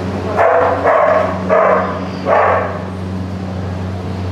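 A dog barking four times in quick succession, over a steady low hum.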